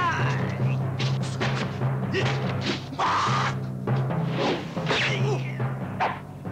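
Film fight-scene soundtrack: music driven by pounding timpani drums, cut with sharp impact sound effects of blows and the fighters' yells and grunts.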